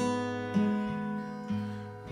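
Acoustic guitar chords ringing out, struck again about half a second in and at one and a half seconds, each time with a change of bass note, and fading away between strokes.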